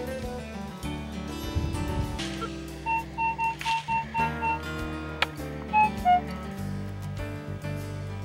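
Background acoustic guitar music throughout. Over it, about three seconds in, a handheld metal-detecting pinpointer probing the dirt gives a run of six short, even beeps, then two more beeps at a lower pitch a couple of seconds later as it closes on a coin.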